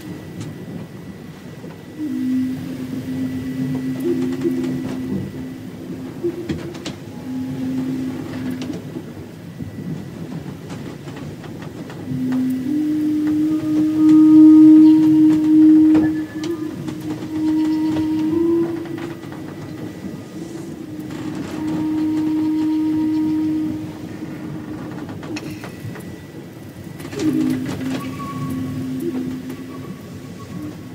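A slow flute melody of long held low notes, played one at a time and moving in small steps. The longest notes are held about three seconds. A steady noisy rumble with scattered clicks runs underneath.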